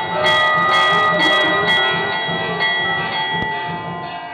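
Temple bells ringing continuously over a steady drum beat of about two to three strokes a second, with several sharp crashes in the first two seconds, as aarti accompaniment. The sound begins to fade near the end.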